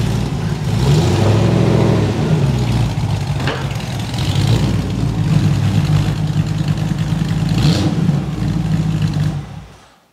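MGB GT engine running at its twin exhaust pipes, idling with a few brief throttle blips that raise the pitch; it fades out near the end.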